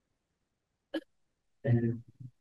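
Mostly quiet room, broken by two brief vocal sounds: a very short blip about a second in and a short voiced syllable near the end, with no words made out.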